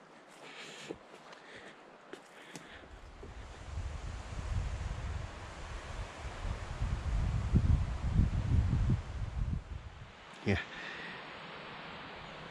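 Wind buffeting the microphone: an uneven low rumble that builds from about three seconds in and dies away near the end, over a faint rustle of wind in the trees. A few faint clicks come before it.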